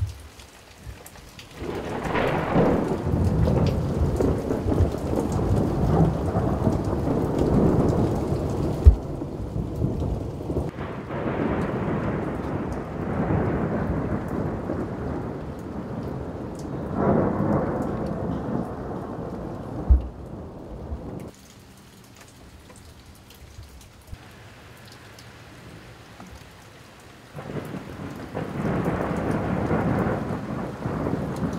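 Rolling thunder in long, low rumbles that swell and fade in several waves, the strongest about two seconds in, over rain. After a quieter lull of rain alone, thunder rises again near the end.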